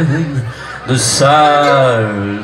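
A man's voice through a concert PA with almost no band behind it. The delivery is drawn-out and chuckling, with a short break about half a second in.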